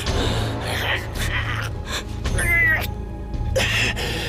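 Sombre drama score with a low, steady drone, under a high, strained, choking cry about two and a half seconds in, with gasping around it.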